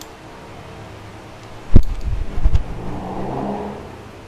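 A small wrench working a nut on a bolt through an aluminum handlebar bracket: a sharp knock a little under two seconds in, the loudest sound, then a few lighter knocks. A low engine-like hum sits in the background in the second half.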